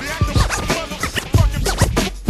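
Hip hop beat with DJ turntable scratching between the rapped verses: short sweeping scratches over kick and snare hits.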